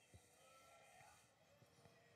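Near silence, with only faint, thin wavering tones in the background.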